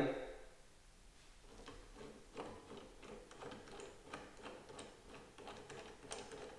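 Faint, irregular clicks and light taps as a plastic Lenox hole-saw door lock jig is handled and fitted onto a door edge.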